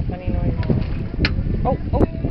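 Wind buffeting the microphone, with indistinct voices behind it.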